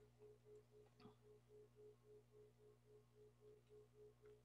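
Near silence, with a very faint steady beep-like tone pulsing on and off about three times a second.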